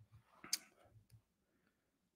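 Near-quiet room with a single sharp click about half a second in, along with a soft breath-like rustle and a few fainter ticks.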